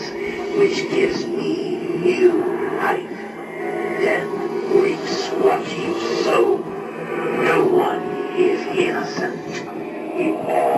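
Fogging Grim Reaper animatronic playing its Halloween soundtrack through its built-in speaker: music with voice sounds that carry no clear words, swelling and easing every second or so.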